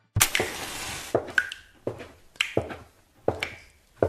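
A loud crash-like hit, then a sparse, uneven run of sharp percussive hits, about two a second, some ringing briefly. This is the beat of a dark electronic music track carrying on alone after the sustained pads drop out.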